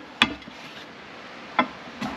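Two sharp knocks about a second and a half apart, the first louder, as items are moved around by hand inside a cardboard box.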